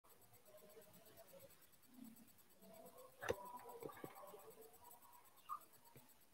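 Near silence, broken a little past halfway by one sharp click and then two lighter ticks: handling noise from the phone that is recording.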